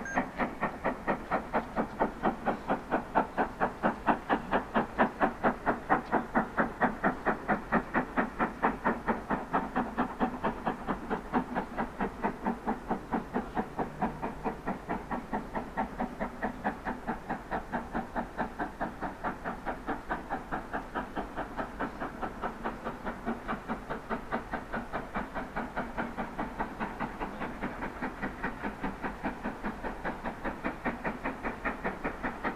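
LMS Princess Coronation class Pacific steam locomotive 46233 Duchess of Sutherland working under steam: a steady, rhythmic chuffing of exhaust beats, about three to four a second.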